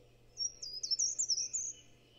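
A bird singing one short, rapid phrase of high twittering chirps, lasting about a second and a half.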